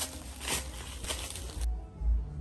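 Footsteps crunching through dry leaves and brush, a step about every two-thirds of a second. About one and a half seconds in, the sound cuts to background music with a deep bass beat.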